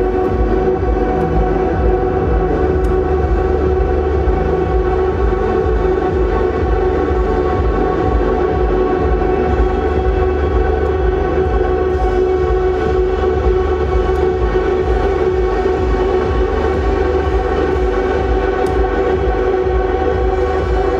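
Live ambient drone music from a Fender Stratocaster electric guitar run through effects pedals and laptop processing. Dense sustained tones are held as a continuous wall of sound over a steady pulsing low beat.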